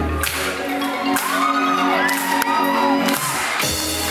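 Live electronic pop band on a concert stage: the beat and bass drop away to a held synth chord while the crowd cheers and whoops, and the full beat comes back in near the end.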